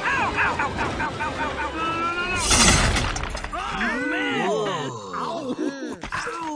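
An animated car character cries out as he skids. About two and a half seconds in comes a loud crash as he plunges into cactus, followed by a string of pained cries.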